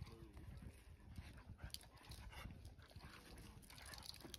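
Two dogs, a husky and a black dog, play-wrestling, heard faintly: paws scuffling and patting on dirt and grass, with a brief faint vocal sound just after the start.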